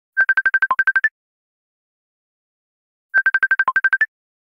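Electronic ringtone: two bursts of rapid short beeps, about ten a second, mostly on one pitch with one lower note near the end of each burst. The bursts come about three seconds apart.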